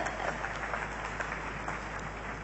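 Faint applause from a church congregation: an even patter of many small claps.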